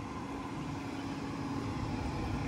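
Steady outdoor background noise with a faint, constant machine hum and a low, uneven rumble.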